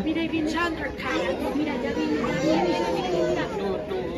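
Several people talking at once, a steady chatter of overlapping voices with no single clear speaker.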